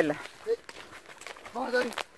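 Short fragments of a person's voice: a brief voiced sound about half a second in and a short spoken utterance near the end, over a faint outdoor background.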